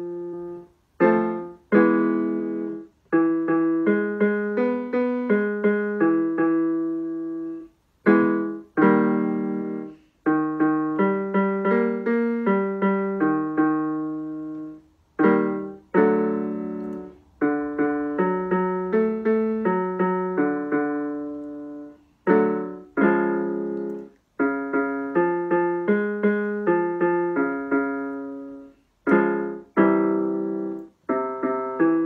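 Electric keyboard with a piano sound playing a vocal warm-up exercise pattern: a short chord, then a run of single struck notes, then a brief pause. The group repeats about every seven seconds.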